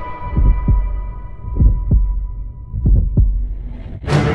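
Heartbeat sound effect: three slow double thumps, about a second and a quarter apart, under faint high sustained tones that die away.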